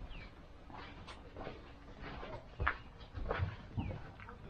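Metal prayer wheels turning on their pivots, with a few short squeaks and several soft knocks.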